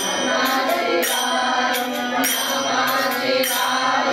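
A group of devotees singing a Hindu devotional bhajan together, kept in time by a steady percussion beat struck about every two-thirds of a second.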